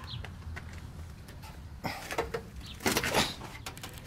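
Handling and rustling noise from a hand-held camera being carried, with two bursts of rustle and knock about two and three seconds in, over a low steady rumble. A faint bird chirps a couple of times.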